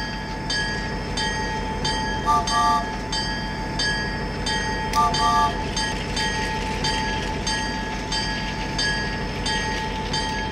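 Battery-powered toy train engines running, a steady motor whine with a regular clicking about twice a second. Two short double toots of a train whistle sound about two and a half seconds in and again about five seconds in.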